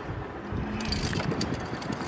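Low rumble of wind on the microphone, with a few sharp metallic clinks of via ferrata carabiners and gear against the steel cable around the middle.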